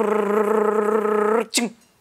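A woman's voice holding one steady drawn-out vocal sound for about a second and a half, then a brief falling sound.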